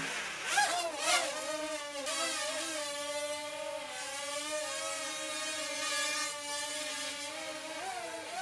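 A toy brick-built micro quadcopter's small electric motors and propellers whining in flight. The pitch bends up and down with throttle about a second in, then holds a fairly steady hum while it hovers.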